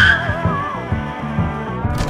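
Loud rock music with electric guitar and a steady beat from the car's stereo. A tire squeal fades out right at the start.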